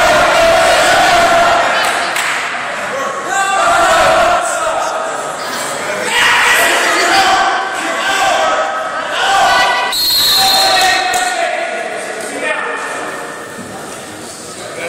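Spectators and coaches shouting and yelling at the wrestlers, echoing in a gymnasium, with a few thuds on the mat.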